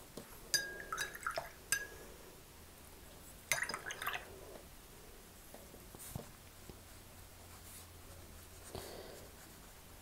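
Watercolor brush being rinsed in a water jar, its ferrule clinking against the glass with a short ringing tone, in two quick bursts about three seconds apart. A couple of fainter knocks follow later.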